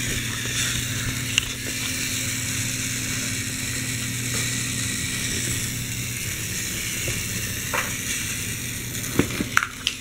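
A K'nex toy truck's small electric motor running its plastic gear train, a steady whirring hum, with a few sharp clicks as the truck drives, several of them near the end.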